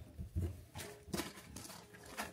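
Items being rummaged through inside a handbag: a handful of light, irregular knocks and clicks with soft rustling in between.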